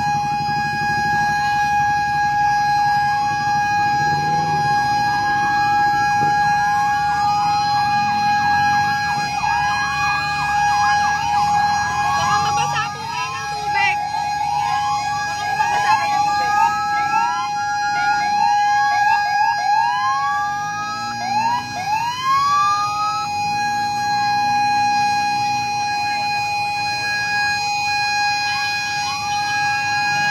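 Several sirens going at once, many short overlapping rising whoops, over one steady high tone held throughout and a low engine rumble. The whoops thin out after about 23 seconds while the steady tone carries on.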